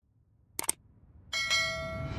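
Two quick tap clicks, then a bright ringing bell chime with several steady tones that starts about two-thirds of the way in and keeps ringing: the click-and-bell sound effects of an animated like-and-subscribe phone intro, the bell standing for the notification bell.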